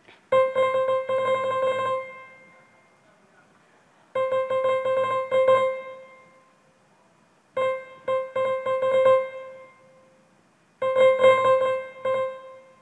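A data sonification of Olympic finish times: a piano-like note struck in four quick clusters, one note for each athlete crossing the finish line. The spacing of the strikes follows the gaps between finishers. Each cluster of same-pitch strikes rings out over a second or two before the next begins, about three to four seconds later.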